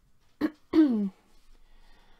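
A woman clearing her throat: two quick sounds about half a second to a second in, the second falling in pitch.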